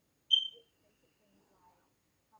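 A single short, high-pitched electronic beep, a fraction of a second long, about a third of a second in.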